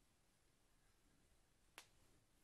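Near silence: quiet room tone, broken by one short, faint click near the end.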